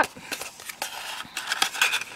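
Stiff cardstock rustling and scraping as a paper piece is worked through a slot in a pop-up card, with a few light ticks from the card edges.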